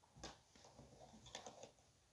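Faint rustling and light clicking of a hand rubbing moistened, steamed barley grits in an earthenware couscous dish, working the water into the grains and breaking up clumps. There is one click about a quarter second in and a small cluster around a second and a half in.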